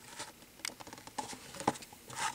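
Plastic blister pack and card of a toy car being handled in the fingers: light, irregular clicks and crackles of the plastic, with the sharpest click near the end.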